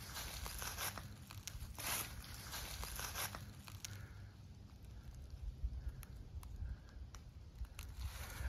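Footsteps crunching through dry leaf litter: a few crunching steps in the first three seconds or so, then only faint rustles and small clicks.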